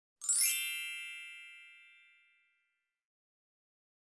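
A bright chime sound effect: a quick shimmering run of high tones that settles into one ringing ding and fades away over about two seconds.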